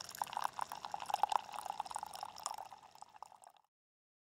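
Brewed coffee pouring in a thin stream from a single-serve coffee machine's spout into a glass mug, a trickling, splashing patter that fades and stops about three and a half seconds in.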